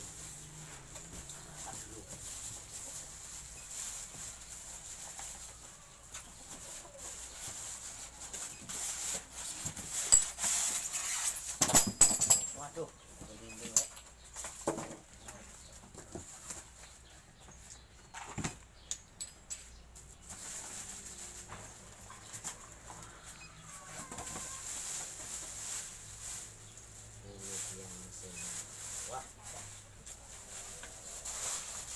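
Plastic bags, foam inserts and a cardboard box rustling, crinkling and knocking as a new power saw is unpacked, with the loudest burst of crackling about a third of the way through.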